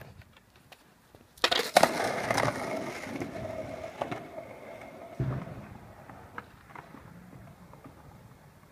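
Skateboard on asphalt: two sharp clacks about a second and a half in, then the wheels rolling with a steady hum that fades over a few seconds. Another knock comes a little after five seconds in.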